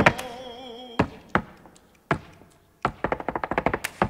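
Flamenco dancer's shoes striking the stage floor: a few separate heel strikes, then a fast run of stamps in the last second. A held sung note fades out at the start.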